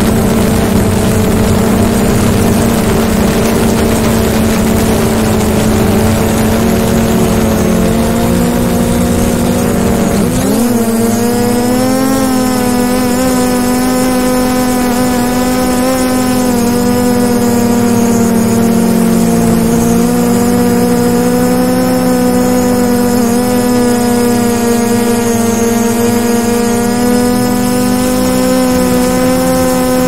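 DJI Mavic Pro quadcopter's propellers running in a loud, steady whine, heard close up from the camera the drone is carrying, with a rushing noise under it. About ten seconds in the pitch dips briefly, the rushing drops away and the whine becomes clearer, its pitch wavering slightly.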